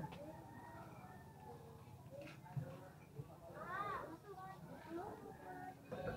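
Faint, distant voices of people talking, with one louder call that rises and falls in pitch about four seconds in.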